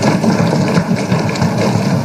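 Many legislators thumping their desks in approval: a dense, steady patter of overlapping thumps.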